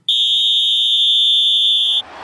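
A referee's whistle blown in one long, steady, high-pitched blast lasting about two seconds, which cuts off abruptly.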